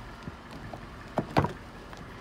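Rear door of a 2008 Cadillac DTS being opened: the handle is pulled and the latch releases, two sharp clicks close together a little over a second in.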